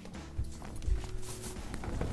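Dull thumps and clothing rustle as a person in a jacket moves about and sits back down, with two low knocks about half a second and one second in. Faint background music sits underneath.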